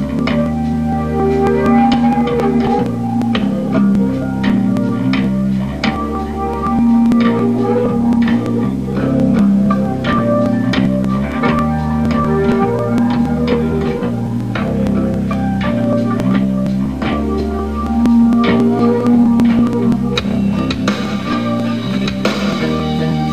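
Rock band playing live, an instrumental stretch without vocals: sustained electric guitar chords over drums, steady and loud.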